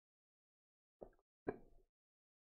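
Two short gulping sounds from a drink being swallowed out of a shaker cup, about half a second apart, the second louder.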